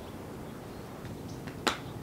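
A single sharp, brief click about three-quarters of the way through, over low steady background noise.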